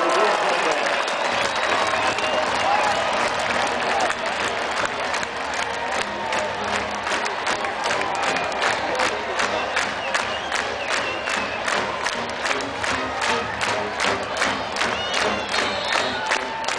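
Large stadium crowd cheering and shouting. From about five seconds in, a fast steady rhythmic beat of about three sharp strokes a second joins in over the crowd noise.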